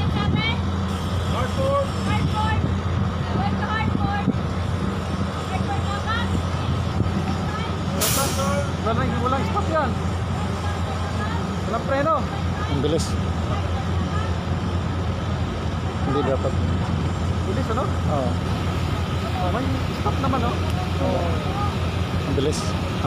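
Ferry's engines running with a steady low drone while the ship comes in to dock. Distant voices are mixed in, and there is a short sharp hiss about eight seconds in.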